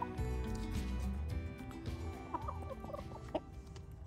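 Backyard hens clucking a few times in the second half while they feed, over background music that fades out.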